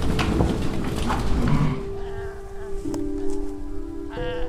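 Cattle and sheep penned indoors: a low moo amid shuffling and knocking, fading after about two seconds into background music with long held notes.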